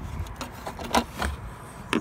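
A few light clicks and knocks over a low rumble: handling noise from a phone camera being moved close along a metal mesh grille. The loudest click comes near the end.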